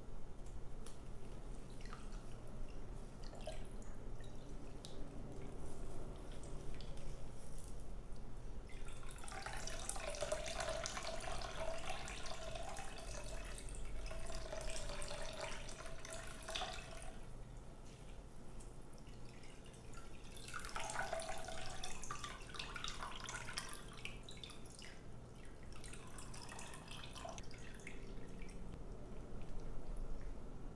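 Whey running from a cloth bag of strained yogurt into a glass jug: a steady pouring stream for several seconds from about a third of the way in, a shorter pour a little later, and light drips between.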